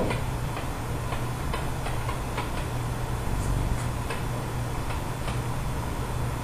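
A series of light ticks over a steady low hum.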